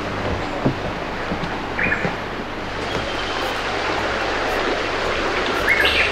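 Steady rushing outdoor noise with two brief high bird chirps, one about two seconds in and one near the end.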